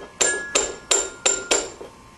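A quick, even series of sharp strikes, each ringing briefly at the same pitch, five in a row at about three a second.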